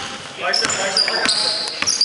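Basketball dribbled on a hardwood gym floor, several sharp bounces, mixed with short high-pitched sneaker squeaks on the court.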